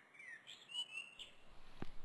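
Faint birdsong: a few short gliding chirps and a brief higher whistled note, over a low hiss, with a single click near the end.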